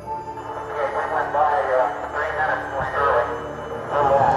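Archival Apollo 11 air-to-ground radio voice, thin and narrow-band with static hiss, calling "We're long," over music underneath.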